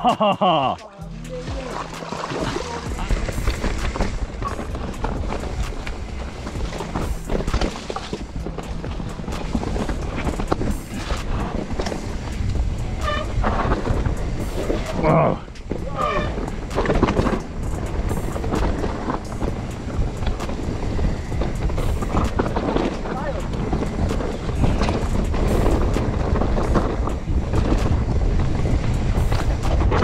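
Mountain bike descending a rough dirt singletrack, heard from the rider's own camera: continuous tyre and trail noise with frequent knocks and rattles from the bike over roots and bumps. Music plays underneath with a low, stepping bass line.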